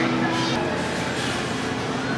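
Big-box store background: a steady low hum with indistinct voices in the distance.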